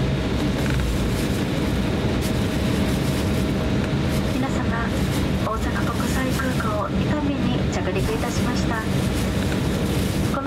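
Cabin noise of an Embraer E170 airliner taxiing after landing: a steady low rumble of the engines at taxi power with a faint steady hum. About halfway through, a cabin crew announcement over the PA begins on top of it.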